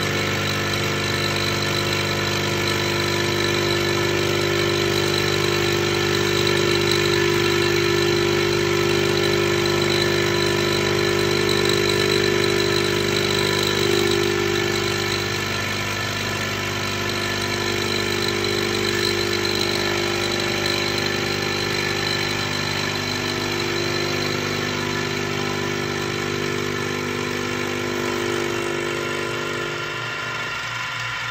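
Vertical mini-mill running at a fairly high spindle speed, its end mill taking a light 10-thou cut along a mild steel part as the table feeds it past: a steady machine hum with a louder cutting tone on top. The cutting tone dips briefly around the middle and falls away near the end.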